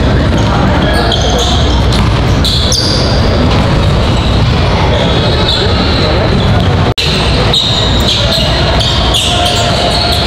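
Basketball dribbled on a hardwood gym floor, with sneaker squeaks and voices echoing in a large hall. The sound cuts out for an instant about seven seconds in.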